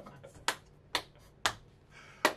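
Three sharp clicks from a man's hands, evenly spaced about half a second apart.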